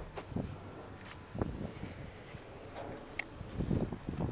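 Wind buffeting a handheld camera's microphone, with scattered low thumps and rustles of handling and footsteps, and one short sharp click a little after three seconds in.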